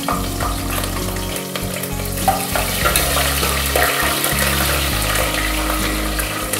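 Green chillies and whole spices frying in hot oil in an open pressure cooker: a steady sizzle with many small crackles.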